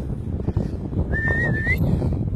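A person whistling one short held note that turns up slightly at the end, about a second in, over a low rumble of wind on the microphone.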